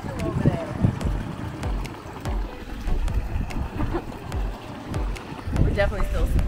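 Wind buffeting the microphone outdoors in uneven low rumbling gusts, with a voice near the end.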